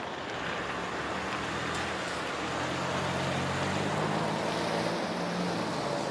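Street traffic noise: a steady rush with the low hum of a vehicle engine that grows stronger partway through.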